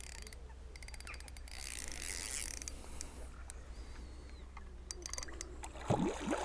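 Fixed-spool fishing reel ticking and ratcheting as a hooked carp is played on a bent feeder rod. A quick run of clicks about half a second in lasts about a second, with shorter runs later.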